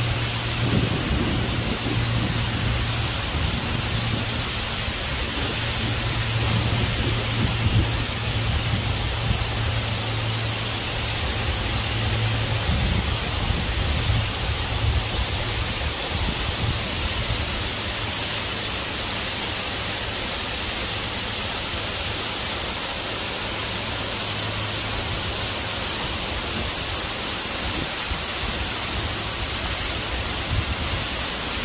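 Large waterfall: falling water and spray making a steady, even rush of noise, with a low rumble underneath that is stronger in the first half.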